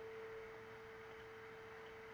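A faint, steady single-pitched tone, a thin hum held at one pitch over low background hiss.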